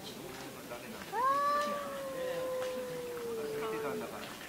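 Domestic cat giving one long, drawn-out threat yowl about a second in, rising quickly, then held and slowly falling in pitch for nearly three seconds, in a standoff with a rival cat.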